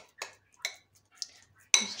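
About four light, unevenly spaced clinks and knocks of a spoon against a bowl, one with a brief ring.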